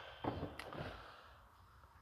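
Faint whir of the Tahoe's power-folding third-row seat motors as the seatbacks finish rising, fading out, with a soft click about half a second in.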